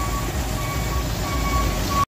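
Toyota Kijang's 7K carburetted four-cylinder engine idling steadily, heard as a low even rumble, with a thin high beep-like tone coming and going about three times over it.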